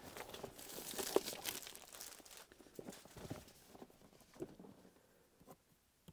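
Clear plastic wrapping crinkling and rustling as a book's clamshell slip case is handled and taken off, with a few light knocks. The rustling fades after about two and a half seconds into faint, scattered handling clicks.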